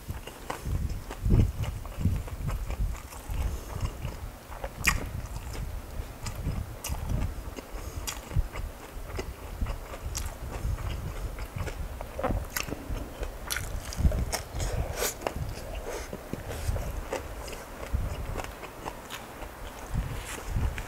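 A person chewing mouthfuls of crispy pork dinakdakan with rice: steady chewing with sharp crunchy clicks scattered through it.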